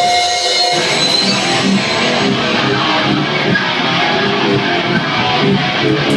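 Hardcore band playing live and loud: distorted electric guitars, bass and drums. A steady high tone rings at first, and the full band comes in under a second in.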